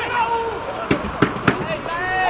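Voices shouting across an outdoor football pitch. Three sharp knocks come in quick succession a little before the end.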